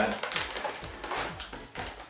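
Metallic anti-static bag crinkling and rustling in the hands as it is lifted out of a box, with small irregular clicks.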